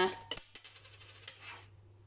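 A small flipped coin landing on a tabletop with a sharp tap, then rattling on the surface for over a second before it goes still abruptly.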